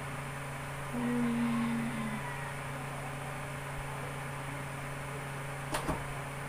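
Steady low electrical or fan hum of a small room. About a second in comes a short steady tone lasting about a second, and near the end a single sharp click.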